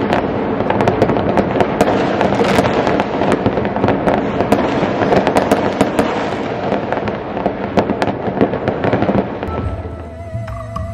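Fireworks and firecrackers going off without pause across a city, a dense crackling full of sharp pops, easing slightly near the end.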